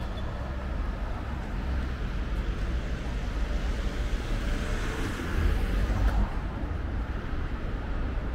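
Street traffic: a road vehicle passes, its tyre and engine noise swelling and fading, loudest about five to six seconds in, over a steady low rumble.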